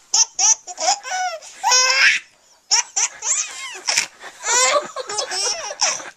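Baby laughing in repeated bursts of high-pitched laughter, with a brief pause a little over two seconds in.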